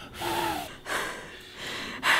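A woman gasping loudly three times, with a short voiced whimper in the first gasp. She is an actress working herself into staged crying.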